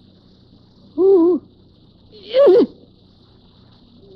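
A woman's two short frightened whimpering cries, the first held and wavering about a second in, the second louder, rising and then breaking off downward. They come over a faint steady hum and hiss from an old cassette transfer.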